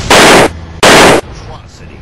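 Two edited-in gunshot sound effects, each a harsh burst about a third of a second long, the second roughly 0.7 s after the first, so loud they distort.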